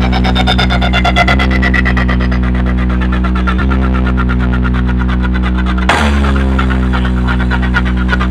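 Electronic speaker-check music played loud through a stacked DJ sound system of bass and mid cabinets: a deep sustained bass drone under a fast, even pulse, the chord shifting every couple of seconds, with a sharp hit about six seconds in.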